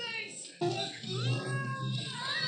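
Cartoon episode soundtrack: a pitched cry or effect glides up and then back down over about a second and a half, starting about half a second in, over a steady low hum.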